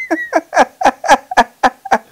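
An elderly man laughing heartily: a quick run of about eight short 'ha' pulses, each falling in pitch.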